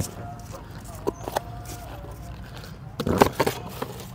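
Light clicks and a short rustling stretch from plastic food boxes and bags being handled on a small folding table, the rustle loudest about three seconds in.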